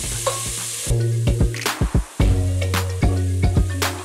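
Bacon and shredded vegetables sizzling in a hot pot while being stirred with a turner, which knocks and scrapes against the pot several times a second. A steady low tone runs underneath.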